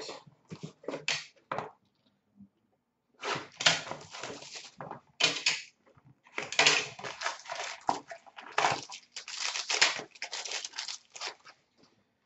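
Hands pulling an Upper Deck Black hockey card box from its case and tearing open its packaging: a string of rustling, crinkling and tearing noises, pausing briefly about two seconds in, then going on for most of the rest.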